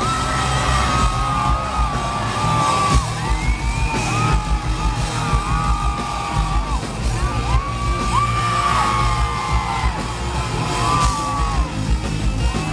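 A live rock band playing loud: distorted electric guitar, bass and pounding drums, with a high lead line of long held notes that bend and slide in pitch over the top. Heard from within the crowd in a large hall.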